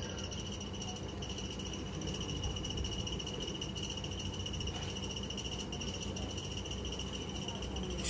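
A cricket trilling steadily at one high pitch, the trill finely pulsed and unbroken, over a low steady background rumble.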